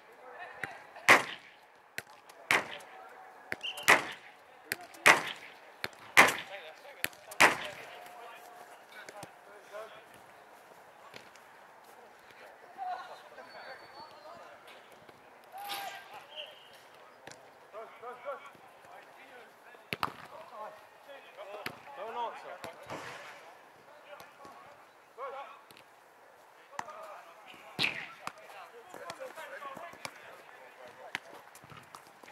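A football struck hard over and over, one sharp thud about every second and a quarter through the first seven or eight seconds. After that come faint shouts of players across the pitch and a few more scattered ball strikes.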